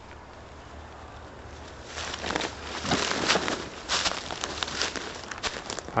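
Footsteps and rustling in dry leaf litter: a brief hush, then about two seconds in a run of uneven steps and leaf-rustling.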